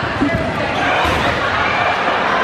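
Dodgeballs thudding on a hardwood gym floor, a few thuds in the first half second, over players' voices and chatter across the court.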